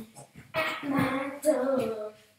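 A boy's wordless drawn-out vocalising, like singing: two long wavering notes, the first about half a second in, the second about a second later.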